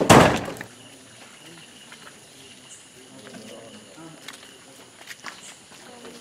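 A loud, sudden thump right at the start, then faint background voices with a few light clicks.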